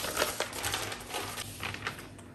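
Brown pattern paper rustling and crinkling as sheets are lifted, folded and spread out flat, with many small crackles and taps that thin out near the end.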